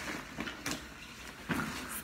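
Handling noise of items being pulled out of a backpack: a few short rustles and scuffs of the bag and a cardboard sticky-note package.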